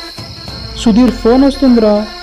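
Steady high chirring of crickets over soft background music. About a second in, a loud voice cuts in with three drawn-out sounds that bend up and down in pitch.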